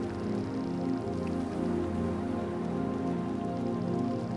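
Calm fantasy ambient music: slow, sustained, overlapping low pad tones over a soft, steady hiss.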